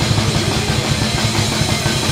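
A metal band playing live: a drummer keeps up a fast, steady beat on a full drum kit with cymbals, under distorted electric guitars.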